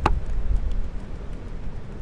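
Strong wind buffeting the microphone: a steady low rumble. A single sharp click comes at the very start.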